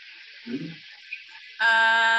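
Faint steady hiss over a call's open microphone, then near the end a voice holding one long drawn-out vowel at a steady pitch, a hesitating 'and' between two names.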